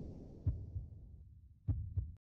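Broadcast transition sound effect under a title card: a deep boom fading out, then two pairs of soft low thuds in a heartbeat rhythm, cut off abruptly.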